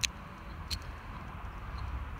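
Two small metallic clicks about 0.7 s apart as a key slides into a VW T4 lock cylinder, with a trial tumbler wafer being checked for fit.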